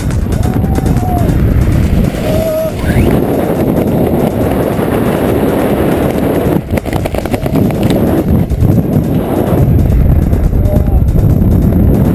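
Loud wind rushing over the camera microphone in skydiving freefall, heard as a dense low rumble.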